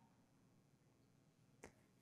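Near silence, broken by a single short faint click about one and a half seconds in.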